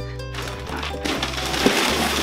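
Background music with a steady bass line. From about half a second in, it is joined by a crinkling rustle of gift-wrapping paper and cardboard as a wrapped gift box is handled and lifted.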